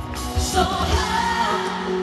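Live pop ballad played loud through an arena sound system: a drum beat under a woman's voice singing a wavering run. The drums drop out briefly near the end.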